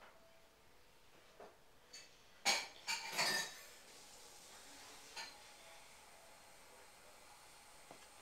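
Painting supplies handled on a tabletop: a few light taps, then a burst of sharp clinks and crinkles about two and a half to three and a half seconds in, and one more light tap a little after five seconds.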